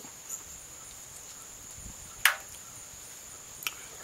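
A grilled crab-leg shell snapped by hand: one sharp crack a little after two seconds in and a fainter click near the end. Crickets trill steadily throughout.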